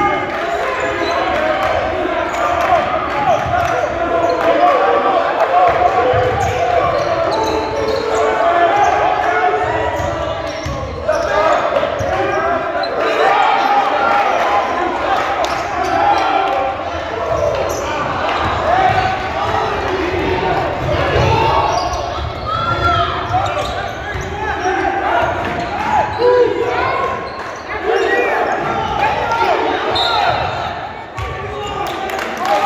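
Basketball bouncing on a hardwood gym court during a game, under constant overlapping voices of players and spectators in a large gymnasium.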